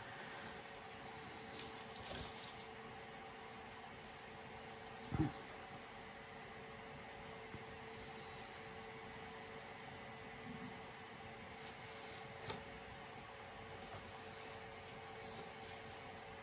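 Faint steady hum of the room with a few brief soft knocks and rustles as the wet painted canvas is handled and turned on its round stand; the clearest knock comes about five seconds in, another near twelve and a half seconds.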